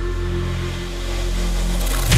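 Intro of a hardstyle electronic track: a sustained low synth drone holding steady, with a noise sweep building up near the end.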